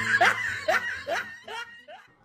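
A person laughing in a run of short pitched 'ha' pulses, about three a second, trailing off and growing fainter toward the end.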